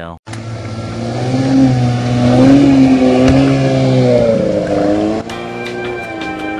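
A vehicle engine running, growing louder to a peak in the middle and easing off again, its pitch bending slightly up and down. It cuts off about five seconds in, and music takes over.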